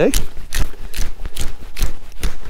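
Hand-twisted pepper grinder cracking black peppercorns: a rapid run of short grinding clicks, about six or seven a second.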